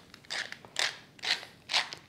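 Hand-twisted pepper mill grinding peppercorns in a steady run of short grinds, about two a second.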